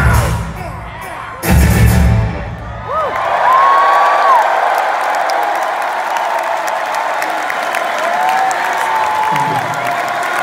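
A rock band with acoustic guitars and drums plays its closing chords, a last loud hit about a second and a half in, then stops. A large crowd then cheers and whoops.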